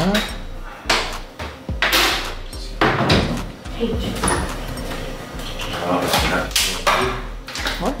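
People talking in low, hushed voices, with no clear words.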